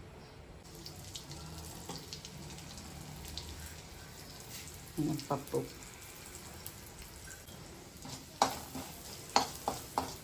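Hot oil sizzling in an aluminium wok, with a steady crackle of fine pops as asafoetida and urad dal fry in it for a tempering, starting about half a second in. A couple of sharp knocks come near the end.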